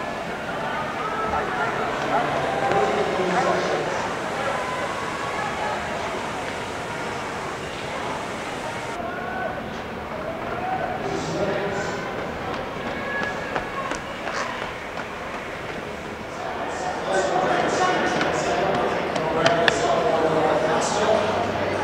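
Indistinct chatter of several voices, with no clear words, in a large indoor space. Sharp clicks or taps come in near the end.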